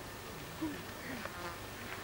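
Faint buzzing of a flying insect, its pitch bending up and down.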